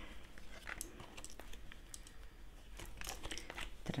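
Playing-card-sized oracle cards being dealt onto a table: faint scattered slides, rustles and light taps of card stock as they are laid down.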